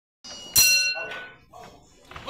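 Boxing ring bell struck to start the round: a light strike, then a loud one about half a second in, ringing with several high metallic tones that fade within about half a second.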